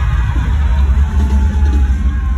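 Loud concert music over a venue sound system, with heavy, steady bass.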